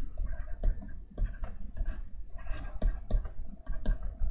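Stylus tapping and scraping on a pen tablet while handwriting, a string of irregular clicks.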